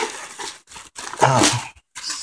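Clear plastic packaging bag crinkling and rustling as it is handled around a new juicer, with a short vocal sound, like a grunt or hum, a little past a second in.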